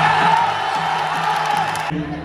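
Ringside Kun Khmer music with a reedy pipe holding a wavering note, under a crowd shouting and whooping. The sound cuts off suddenly near the end.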